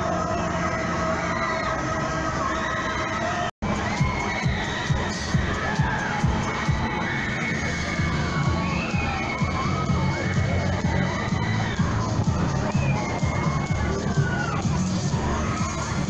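Crowd of riders screaming on a spinning fairground thrill ride, many high voices rising and falling over each other, above a steady low rumble. The sound drops out for an instant about three and a half seconds in.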